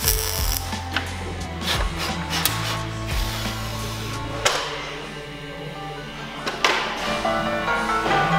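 Background music over the crackle of a MIG welding torch working on thin car-body sheet steel, with a few sharp spitting pops.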